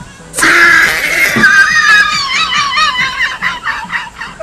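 A sudden, very loud high-pitched shriek close to the microphone, held for about two seconds and then breaking into quick bursts of laughter. Dance music plays faintly underneath.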